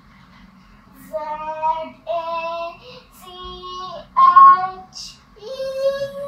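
A young girl singing a short tune in about five held notes, starting about a second in.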